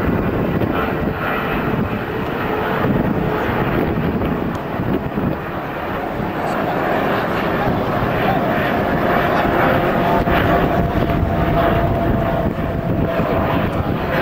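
Jet airliner flying overhead, its engines a loud, steady rush of noise, with a faint steady whine coming in about halfway through.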